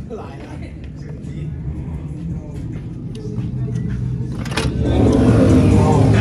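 Motor vehicle engine on the street growing steadily louder as it accelerates, loudest over the last second or so, with voices underneath.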